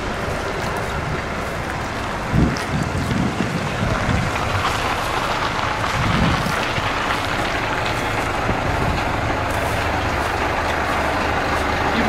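A bus engine running close by, a steady rumble, with a few dull bumps between about two and six seconds in.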